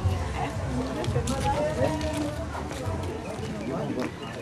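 Overlapping chatter of a group of guests talking at once, with no single voice standing out, over a low hum and a few sharp clicks.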